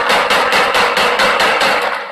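Rapid gunfire, a fast even string of about six or seven shots a second that stops near the end, which the narrator takes for a MAC-10 submachine gun or a semi-automatic gun.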